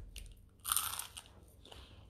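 Crunching as a person bites and chews a piece of crisp bread crust close to the microphone, with the loudest crunch about half a second in and a few smaller ones after it.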